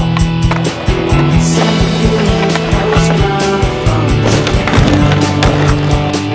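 Skateboard wheels rolling on street pavement, with the knocks of the board, under a music track that has a steady beat.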